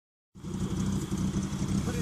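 Geo Tracker's engine idling steadily.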